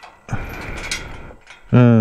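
Steel chain and padlock rattling and clinking against a locked metal bar gate as a hand grabs and tugs at them, for about a second. A short voiced 'hmm' follows near the end.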